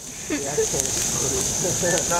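Bonfire of a burning couch crackling, with a steady high hiss throughout, under quiet, indistinct voices.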